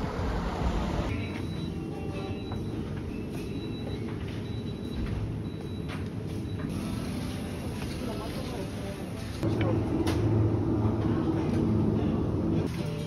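Brief street traffic at the start, then a supermarket's steady background noise with indistinct voices.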